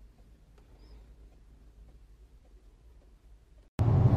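A faint low hum, close to silence. Near the end it switches suddenly to the loud low rumble of road noise inside a moving car's cabin.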